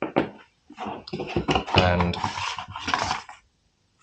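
Clicks and clinks of a Hatsan Escort shotgun's magazine retaining cap being handled, then, about two seconds in, a scraping of the forend being slid off the metal magazine tube.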